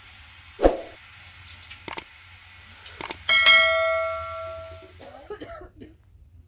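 A bell 'ding' sound effect of a subscribe-button animation rings out about three seconds in and fades over nearly two seconds, just after a couple of sharp clicks. A short thump sounds just under a second in.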